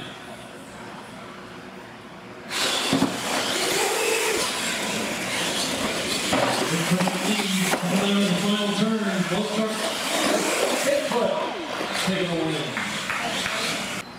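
Radio-controlled monster trucks racing on a concrete track: a sudden rush of motor and tyre noise starts about two and a half seconds in and keeps going until just before the end, with a man's voice calling over it.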